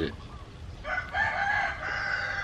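A rooster crowing: one long crow that begins about a second in and carries on past the end.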